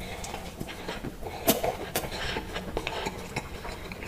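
Close-miked eating sounds: a big bite into a soft bread roll and chewing, with sharp wet mouth clicks, the loudest about a second and a half and two seconds in.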